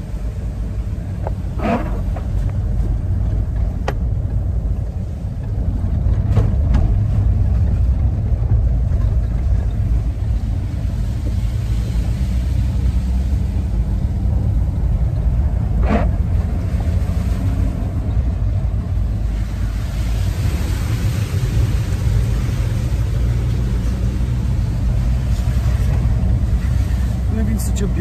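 Steady low rumble of a moving vehicle heard from inside the cabin: engine and tyre road noise, with a few faint clicks.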